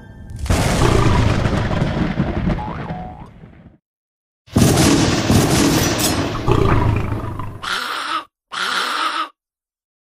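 Edited-in sound effects: explosion-like booms and rumbles that each start suddenly and die away, in several pieces separated by abrupt cuts to dead silence.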